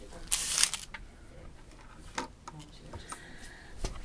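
Gloved hands handling a capped syringe as it goes into a sharps container: a brief rustle about half a second in, then a few light plastic clicks.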